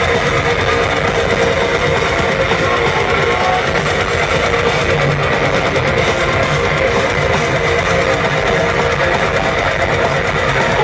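Heavy metal band playing live, heard from the audience: distorted electric guitars, bass and drums in a dense, loud, unbroken wall of sound.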